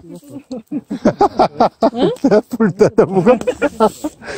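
People talking: quick, animated voices from about a second in, after a few short taps at the start.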